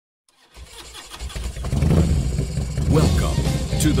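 Motorcycle engine starting and running, getting louder over the first couple of seconds. A man's voice comes in near the end.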